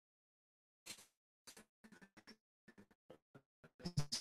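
Near silence broken by a scattering of faint, short clicks, irregularly spaced and mostly in the second half.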